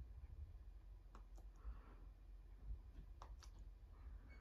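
Near silence with a few faint clicks, a pair about a second in and a cluster around three seconds in: remote control buttons being pressed to move through a DVD menu.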